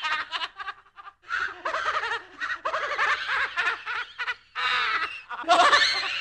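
A spooky horror-movie laugh sound effect: a voice laughing in rapid pulses, in several bursts with short breaks between them, and a louder burst starting near the end.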